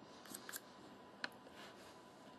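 Faint scratches of dry sidewalk chalk rubbed against the tip of a wooden sitar tuning peg, a few short strokes, the sharpest about a second and a quarter in. The chalk is being put on the peg's contact area to help it turn smoothly in its hole.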